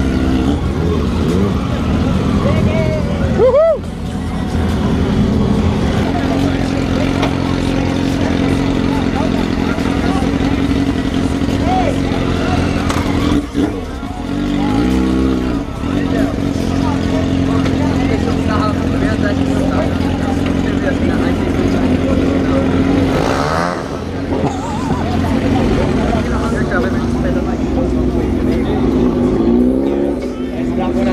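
Several motorcycle engines idling together, with a few rising and falling revs, amid people's voices.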